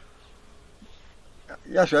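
Faint buzzing of a flying insect during a lull, then a man's voice starts near the end.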